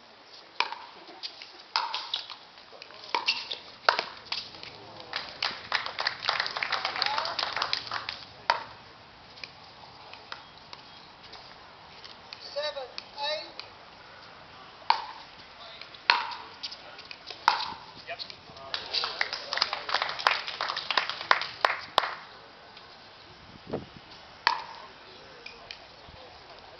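Pickleball paddles striking the hollow plastic ball: sharp pops with a short ringing tone, about one a second during rallies. Hits from several courts overlap into dense clusters about a quarter of the way in and again about three quarters through.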